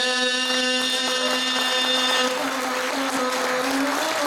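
Gusle, the single-string bowed folk fiddle, bowed on one steady held tone, under a sustained sung note from the guslar. The sung note stops a little past halfway and the gusle tone carries on alone.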